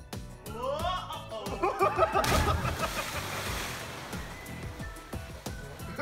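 A person plunging from a rock ledge into a deep seawater rock pool. The splash hits about two seconds in as a sudden rush of noise that fades over the next two seconds, with background music playing throughout.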